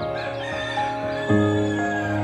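A rooster crowing once, a single drawn-out call, over background music with long held notes.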